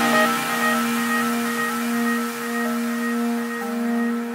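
Beatless stretch of a melodic techno mix: a sustained synth pad holds a steady chord with no drums, and a lower note comes in near the end.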